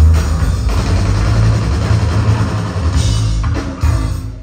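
Loud live rock music: an electric bass solo backed by a drum kit, with a heavy, booming low end.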